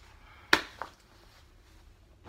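Two sharp clicks: a loud one about half a second in and a fainter one just after, with quiet room tone otherwise.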